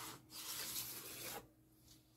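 Pencil scratching a line along a clear plastic set square on a fibreboard sheet: a short stroke, then a longer one of about a second.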